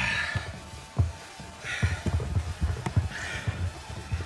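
A man straining and gasping for breath three times inside a sealed, air-starved box, with irregular dull thumps, over background music.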